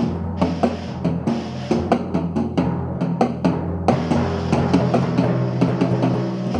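Percussion ensemble playing: timpani ringing low under a dense run of sharp snare drum and other drum strokes.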